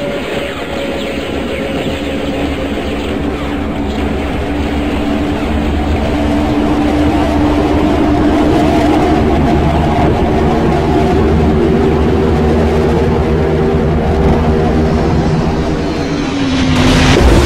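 Propeller aircraft engines droning steadily, growing louder over the first half and then holding at full level.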